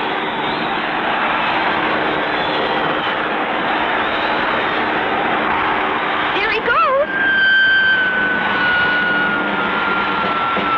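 Cartoon soundtrack with a steady noisy background drone. About six and a half seconds in comes a brief wavering sound, then a long single whistle falling slowly in pitch: the classic cartoon effect for something dropping from the sky.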